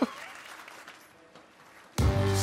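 Light applause from a small studio audience, fading away over two seconds.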